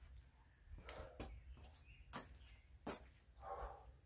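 A few faint footsteps on a garage floor, about one a second, and a short, soft pitched sound near the end.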